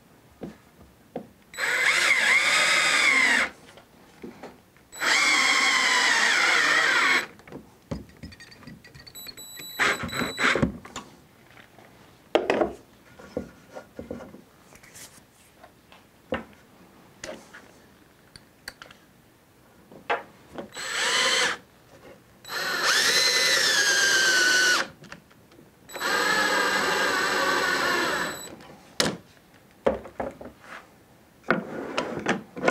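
DeWalt cordless drill/driver driving wood screws into pre-drilled hardwood: five runs of the motor's whine lasting a second to a few seconds each, two early and three near the end, the pitch bending as each screw bites and seats. Light clicks and handling knocks fall in the gaps.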